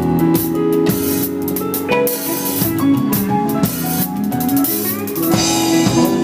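Live rock band playing an instrumental passage: a drum kit with frequent cymbal crashes and drum hits under sustained guitar notes.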